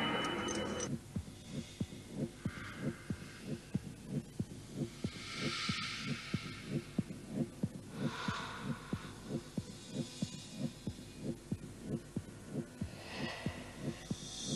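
Soundtrack: a steady low throbbing pulse, like a heartbeat, about three beats a second, with airy swells that rise and fade above it every few seconds.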